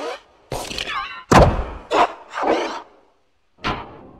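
Edited production-logo sound effects: a run of cartoon thuds and whacks with squeaky gliding tones between them. The loudest thud comes about a second and a half in, and another lands near the end.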